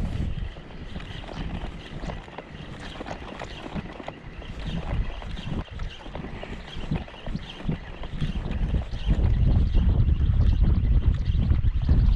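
Wind buffeting the microphone, heavier in the last few seconds, over choppy water lapping and splashing with scattered small ticks.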